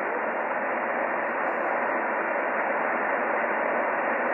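Shortwave radio receiver's speaker giving a steady, featureless hiss of band noise on upper sideband, narrow and muffled by the receiver's speech filter, with no station transmitting between overs.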